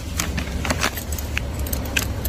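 Light metallic jingling and a scatter of sharp clicks, over a low rumble of the phone's microphone being handled.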